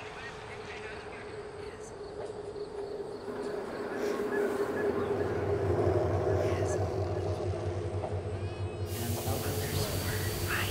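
Ambient soundtrack: a sustained drone of steady low tones that grows louder from about halfway, with indistinct voices mixed in and a burst of hiss near the end.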